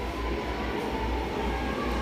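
Sewing machine running steadily as it stitches a seam through the blouse fabric.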